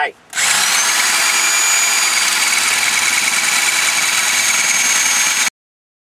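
SDS hammer drill with a half-inch masonry bit drilling into a concrete foundation wall, one of a ring of holes drilled around a marked circle to cut the opening. It starts about a third of a second in, rises slightly in pitch as it comes up to speed, runs steadily, and stops abruptly near the end.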